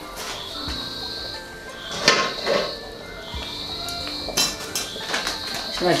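Background music with a few clinks and knocks of a flat metal pot lid being handled and set down, the loudest about two seconds in.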